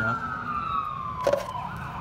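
Emergency-vehicle siren: one slow wail that peaks and then falls away. A single sharp click comes about a second and a quarter in.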